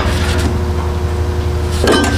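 Steady low mechanical hum of running shop machinery, with a brief knock near the end.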